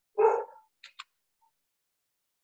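A dog barks once, a single short loud bark, followed about a second in by two short clicks.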